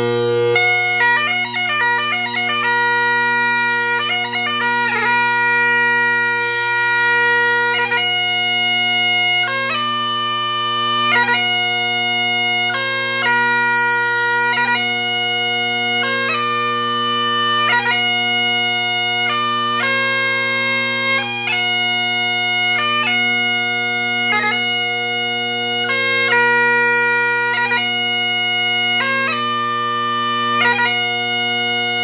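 Great Highland bagpipe played as piobaireachd: the drones hold a steady chord throughout. About half a second in, the chanter comes in with a few seconds of quick ornamented runs. It then settles into the slow ground of the tune, long held notes linked by short gracenote flourishes.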